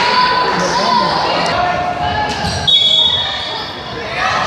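Voices and chatter echoing around a school gym during a volleyball match, with a short, shrill referee's whistle just under three seconds in.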